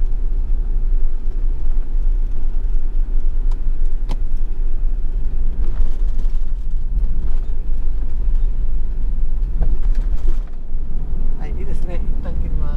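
Steady low road and engine rumble of a camper van driving along a winding mountain road, heard from inside the vehicle, with a couple of faint ticks in the middle.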